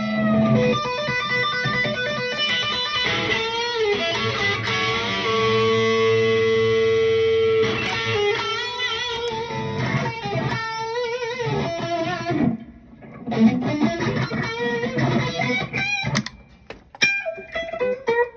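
Electric guitar, a Jackson Kelly with a Floyd Rose tremolo, playing long sustained notes through a pedalboard, with pitches that waver and bend several times and one note held for a few seconds in the middle. Near the end the playing thins out into shorter, separate notes.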